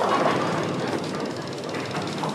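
Steady noisy din of a busy bowling alley.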